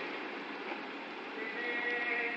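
Passenger train pulling away and running off down the line, a steady rumble from the coaches, with a high thin squeal joining in about one and a half seconds in.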